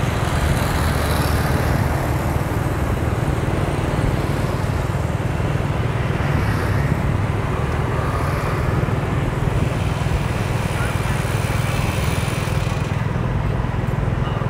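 Steady street traffic heard from a moving motorbike: the engines of the surrounding scooters over a constant low rumble.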